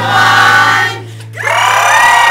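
A group of voices singing two long held notes together over background music, the second note coming in about a second and a half in.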